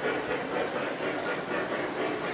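O-gauge model passenger cars and locomotive rolling over three-rail track: a steady rolling rumble of small metal wheels on the rails.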